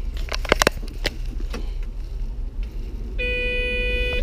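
Keys jangling and clicking in the ignition of a Caterpillar 966 wheel loader, then one steady electronic warning tone about three seconds in, lasting about a second, as the key is switched on before start-up. A low steady rumble runs underneath.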